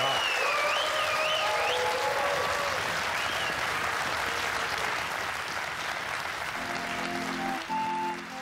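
Studio audience applauding, with music playing over the clapping. The applause thins out near the end, where a few held musical tones sound.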